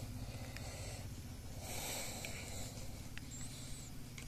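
A soft, breathy exhale about one and a half seconds in, over a faint steady low hum and a few light clicks.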